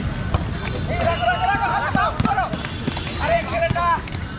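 Young players shouting calls across the court, high-pitched, in two bursts, over the steady rumble of inline skate wheels on the hard court, with a few sharp knocks.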